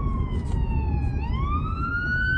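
Emergency vehicle siren in a slow wail: its pitch falls steadily, then climbs quickly again about a second in. It is heard from inside a moving car over steady low road rumble.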